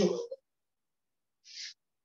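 The last word of a man's speech, then silence broken by one brief, soft hiss about one and a half seconds in.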